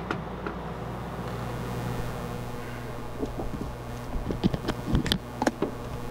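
RV air conditioner running with a steady hum. A few sharp clicks and knocks come near the end.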